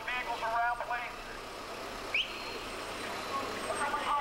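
Street background noise with a few voices in the first second over a steady traffic hum, and a short rising chirp about two seconds in.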